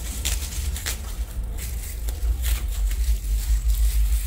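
Black plastic garbage bag rustling and crinkling in short repeated crackles as it is handled, over a steady low rumble.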